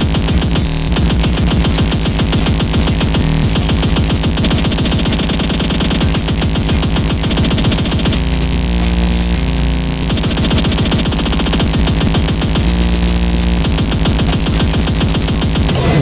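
Oldschool speedcore track: an unbroken stream of very fast, distorted kick drums filling the whole range. About eight seconds in, the treble drops back for a couple of seconds and held pitched bass notes come through, then again briefly near thirteen seconds.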